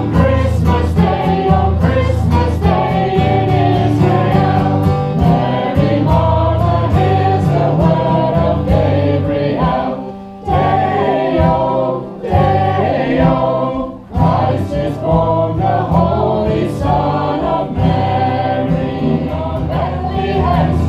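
Choir singing a Christmas carol with instrumental accompaniment, breaking off briefly between phrases about ten and fourteen seconds in.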